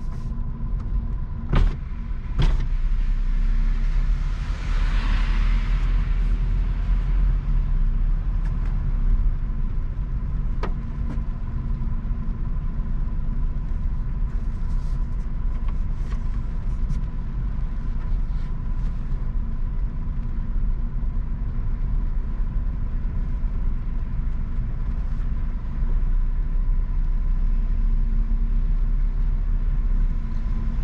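Car driving on a wet road in the rain, heard from inside the cabin: a steady low rumble of engine and tyres with a faint steady high whine. A brief hiss swells about five seconds in, and two sharp clicks come near the start.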